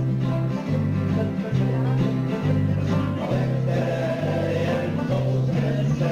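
Archtop acoustic guitar strummed in a steady rhythm, its bass notes changing about once a second, accompanying a man singing a folk song.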